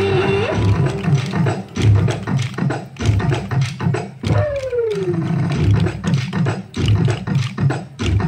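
Festival dance music for a kolatam stick dance: a steady low beat with many sharp clicks, and one falling pitched slide about halfway through.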